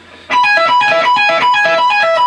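Electric guitar playing a fast, repeating high-register lick, starting about a third of a second in: notes picked and pulled off high on the neck, cycling between the high E and B strings.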